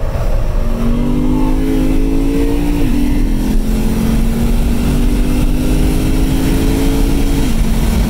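Stock Lexus RC F's 5.0-litre V8 accelerating hard, heard from inside the cabin: the engine's pitch climbs, drops at an upshift about three seconds in, then climbs again and drops at a second upshift near the end, over a heavy low road and wind rumble.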